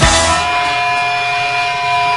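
Live blues-rock band: a crash on the beat, then a long held electric guitar note ringing out over a sustained chord while the rhythm section drops back.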